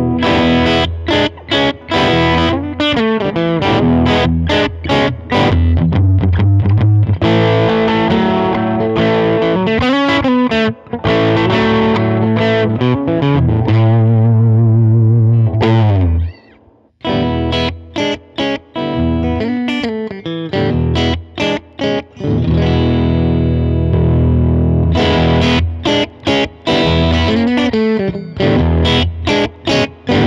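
Electric guitar played through a Mesa Boogie California Tweed tube combo amp set on the edge of breakup, so the tone is lightly overdriven, with a boost pushing it further for lead lines. Chords and single-note phrases with string bends, broken by a brief gap about halfway through.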